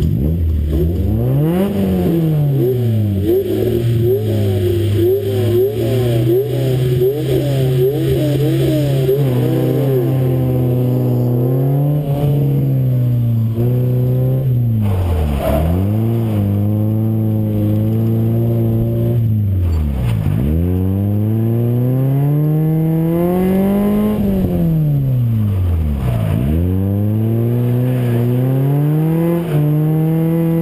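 Nissan Silvia S15's engine driven hard through a gymkhana course. The revs climb, hang with quick wobbles, then fall sharply and build again several times as the driver works the throttle and gears.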